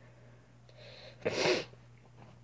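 A faint intake of breath, then one short, breathy burst of air from the girl's nose or mouth, about a second and a half in.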